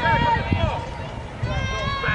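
Many overlapping voices of spectators and players talking and calling out at a youth football game, none close enough to make out, over a low uneven rumble.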